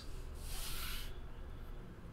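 A brief soft rub of trading cards being handled and slid into place, lasting under a second and starting about a third of a second in.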